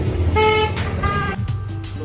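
A vehicle horn gives one short, steady toot about a third of a second in, over a steady low rumble of road traffic.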